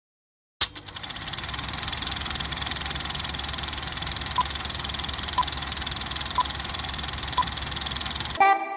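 Film projector running: a steady, rapid mechanical clatter that starts with a sharp click about half a second in. From about four seconds in, a short beep sounds once a second, four times, as the countdown leader counts down.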